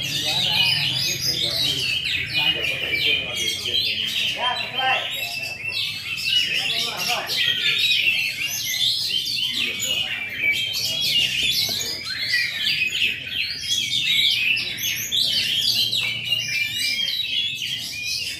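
Many caged songbirds singing at once, a dense, unbroken chorus of overlapping rapid chirps and trills.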